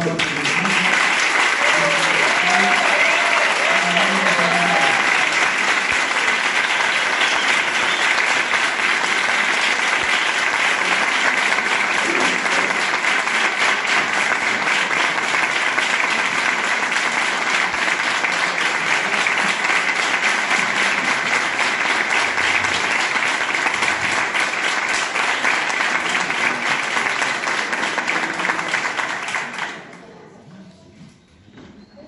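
Audience applauding steadily, dying away just before the end.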